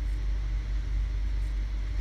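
Steady low hum of background room noise, with no speech.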